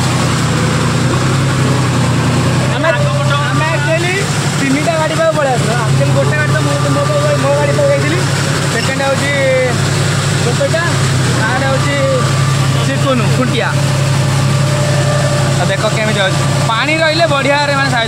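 John Deere tractor's diesel engine running steadily as it pulls a puddling implement through a flooded paddy field, a constant low drone, with a man's voice talking over it on and off.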